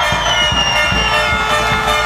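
A crowd cheering and clapping, with music behind it. A long, high whistle runs through the first second and a bit, dropping slightly in pitch.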